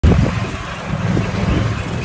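Golf cart driving along a paved road, giving a steady low rumble with a fainter hiss above it.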